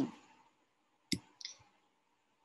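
A single sharp click about a second in, then a fainter short tick, in a pause between words.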